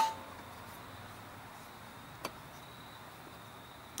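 A sharp metallic clink with a brief ring as the carburetor and engine parts are handled, then a quiet stretch with a faint steady high tone and one small tick about two seconds in.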